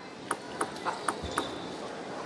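A table tennis ball bounced on the table by hand before a serve: four short, sharp clicks, about three a second, over low arena background noise.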